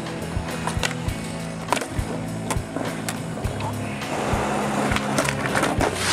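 Music with a steady beat, mixed with a skateboard's wheels rolling on concrete. The rolling grows louder about four seconds in.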